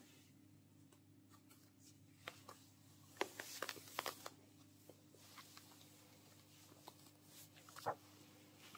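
Faint rustling and scattered small clicks of hands handling and pulling on a sheer nylon stocking, busiest about three to four seconds in and again near the end, over a steady low hum.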